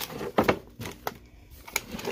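Hand handling a plastic storage container on a shelf: a few light plastic knocks and clicks, the loudest about half a second in.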